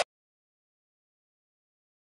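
Silence: the backing music cuts off abruptly right at the start, leaving nothing at all.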